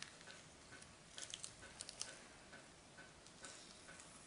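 Near silence: the faint, soft crackle of gloved hands peeling the skin off roasted red peppers, over a faint regular tick about twice a second.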